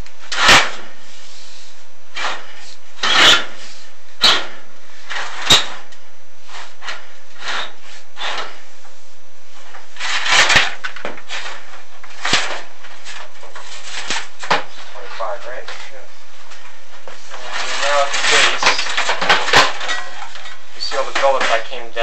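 Chimney inspection camera knocking and scraping against the inside of a corrugated metal flue liner as it is lowered, in a string of irregular sharp knocks and rubs.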